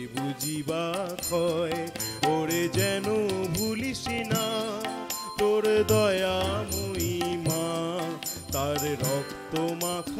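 Male voice singing a Bengali devotional song, with harmonium and a steady percussion beat accompanying it.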